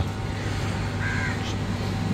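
A crow cawing once, briefly, about a second in, over a steady low hum.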